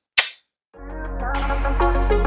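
A sharp kiss smack from a blown kiss near the start, then electronic outro music fading in from just under a second, with a sustained low bass.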